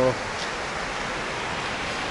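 Steady, even rushing of a forest stream, a continuous hiss of running water with no breaks.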